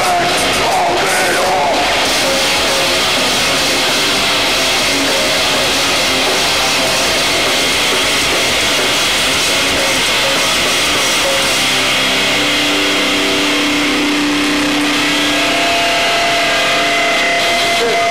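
Live band between songs: a loud, steady wash of distorted electric guitar and amplifier noise, with held guitar notes ringing out over the last several seconds.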